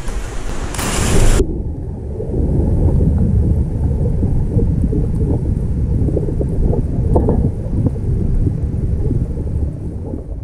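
A splash as a diver hits the pool water about a second in, then a low, dense rumble of churning water heard from underwater, muffled with the high end gone.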